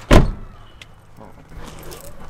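Driver's door of a Jeep Cherokee Sport slamming shut: one loud, sharp thump right at the start, then quiet.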